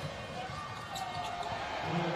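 Live basketball court sound at a moderate level: a ball bouncing on the hardwood court over faint arena ambience and distant voices.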